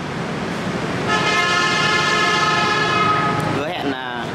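A vehicle horn sounds one steady, held note for about two and a half seconds, starting about a second in.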